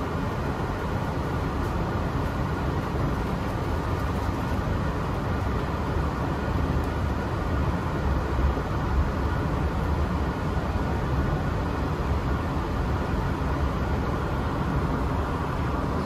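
Steady low rumble and hum inside a moving automated airport people-mover train car.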